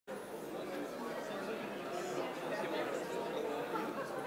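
Indistinct background chatter of many people talking at once, a steady murmur of a crowd with no single voice up close.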